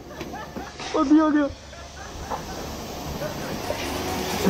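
Pressure washer spraying water onto a metal grating, a steady hiss that builds and grows louder through the second half.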